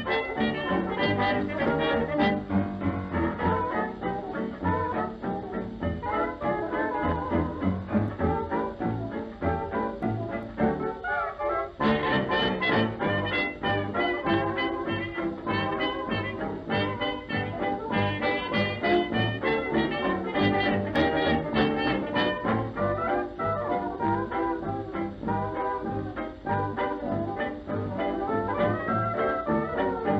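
Upbeat swing-style background music with brass instruments over a steady beat, thinning out briefly just before the middle.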